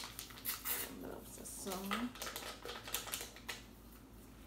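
A foil-lined seasoning packet being torn open and crinkled as it is emptied: a run of quick, irregular dry crackles and clicks.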